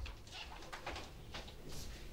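A pause in a sermon: quiet room tone with a steady low rumble and a few faint clicks.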